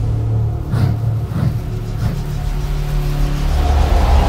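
Intro music for a logo animation: a deep held drone with three heavy hits in the first two seconds, then a rising sweep building toward the end.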